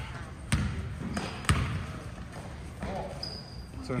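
Basketball bouncing on a gym floor: three sharp bounces within the first second and a half. A brief high squeak, as of a sneaker on the court, comes about three seconds in.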